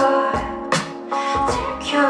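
A woman singing live into a handheld microphone over an instrumental accompaniment with a steady beat.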